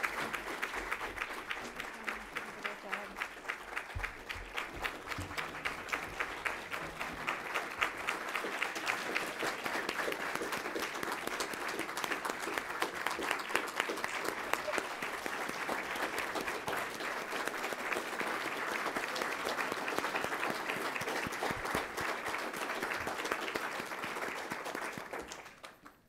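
A large audience applauding. It starts with more separate claps, thickens into dense applause, and falls away sharply just before the end.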